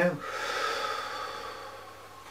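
A man's long exhalation, the release of a deep breath, breathy and fading out over about a second and a half.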